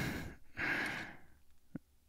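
A man's breath close to the microphone: two long, breathy sighs, one just ending as the other begins about half a second in, then a small mouth click near the end.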